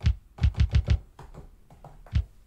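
Electronic drum-machine thumps from a Novation Circuit Tracks groovebox: a quick run of about five low, clicky hits about half a second in, then a softer run of lighter ticks.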